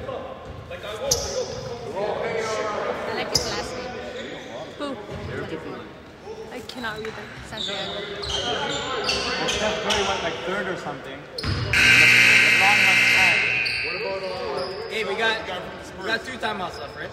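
Basketball bouncing on a hardwood gym floor among echoing players' voices. About twelve seconds in, a loud scoreboard buzzer sounds for about two seconds.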